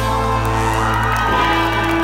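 Live brass band with trumpets and tubas holding a long closing chord at full volume, with the audience cheering and whooping over it.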